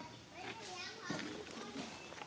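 Background voices with children's voices among them, several wavering high-pitched voices overlapping for most of the two seconds.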